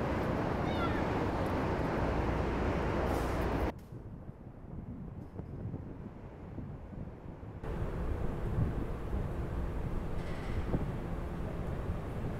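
Outdoor city street ambience: a steady wash of traffic and crowd noise that drops away sharply about four seconds in and comes back, somewhat quieter, about eight seconds in.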